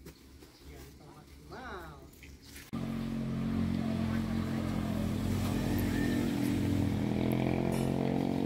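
An engine idling with a steady low hum, starting abruptly about a third of the way in. Before that it is quiet, apart from a faint distant voice.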